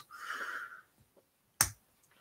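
A single sharp click about one and a half seconds in: a LEGO piece snapping onto a stud after a hard press, a stud that was tough to get on. A faint hiss comes before it.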